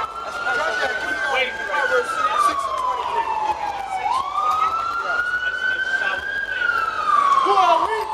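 An emergency vehicle siren on a slow wail: the tone climbs, holds and slowly falls, about two cycles of some four seconds each, with people's voices underneath.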